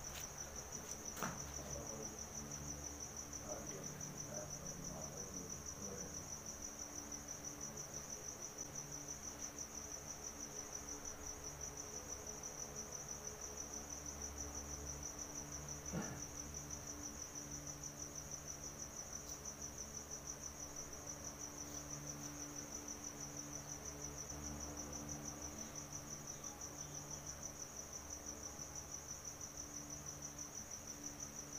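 Crickets chirping in a steady, high-pitched pulsing trill, over a faint low hum, with a soft knock or two.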